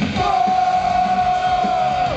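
Live thrash metal band playing at full volume: pounding drums and distorted guitars under one long, steady, high held note lasting about two seconds.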